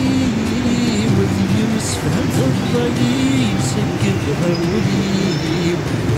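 STM MR-73 rubber-tyred metro train pulling into the station and rolling past along the platform, a steady loud running noise.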